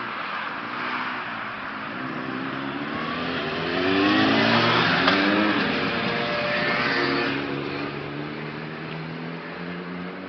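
A motor scooter passing close by, its engine rising in pitch as it accelerates, loudest in the middle few seconds, over a steady hum of street traffic.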